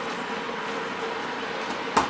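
Steady hiss of onions, peppers, mushrooms and tomatoes sizzling in an Instant Pot's inner pot on sauté, with a faint steady hum beneath.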